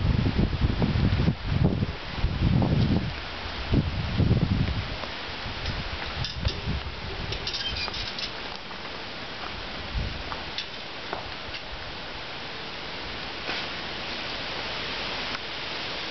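Outdoor background: low rumbling gusts of wind on the microphone for the first few seconds, then a steady hiss with a few faint bird chirps.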